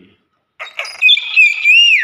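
Hill myna calling loudly from about half a second in: a harsh burst, then sliding whistles, the last one swooping up and then falling away.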